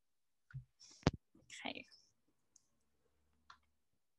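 A few faint clicks and knocks close to the microphone at a computer desk. The loudest is a sharp click about a second in, followed by a short breathy rustle and a last small tick near the end.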